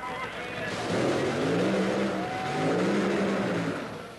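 Top Fuel dragster doing a burnout: the nitro-burning engine revs up and back down twice over a loud rush of spinning, smoking rear tyres.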